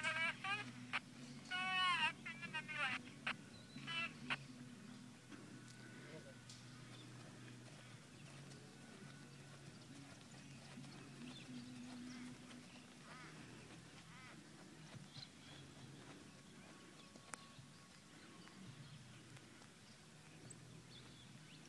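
An indistinct person's voice in the first three seconds, then faint background with a low, steady hum.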